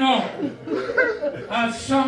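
A man preaching into a microphone in a drawn-out, chanted way, with chuckling; some words are held on a steady note for about half a second.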